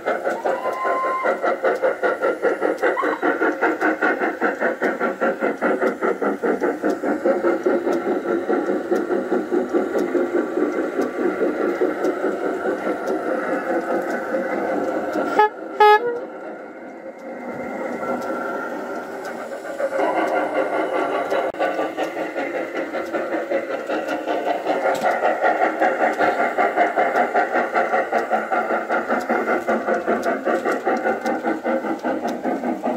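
The steampunk pram's steam-engine effect runs with a fast, even chugging. About halfway there is a short, loud horn toot. The chugging then drops away for a few seconds and starts up again.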